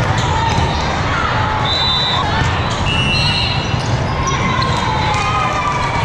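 Din of a big hall full of volleyball games at once: voices and calls from players and spectators, balls being struck and bouncing on the courts, and a few short, high referee whistle blasts from neighbouring courts.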